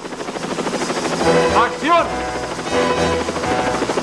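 A helicopter's rotor beating in a quick steady rhythm, swelling up from quiet, with music of held tones over it and a brief swooping tone about halfway through.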